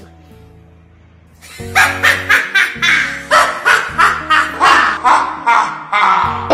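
A child's exaggerated witch cackle, a string of loud 'ha' bursts about three a second, starting about a second and a half in, over background music with a steady bass line.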